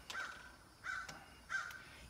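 A bird calling: three short calls, a little under a second apart.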